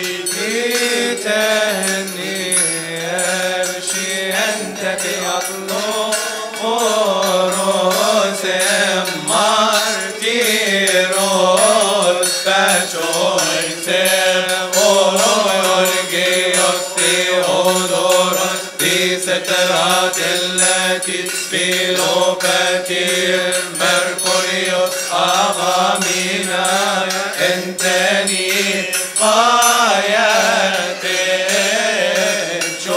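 Coptic liturgical hymn chanted in unison by a group of men's voices, one long winding melody sung without a break.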